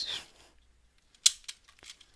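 Plastic clacks of an unlubricated Dayan Lingyun v2 3x3 speed cube being turned by hand: one sharp clack about a second in, then two fainter ones.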